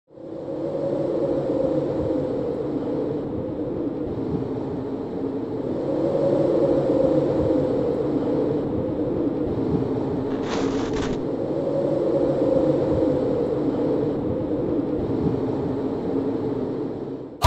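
A steady low drone that swells and eases about every five seconds, with a brief hiss about ten and a half seconds in.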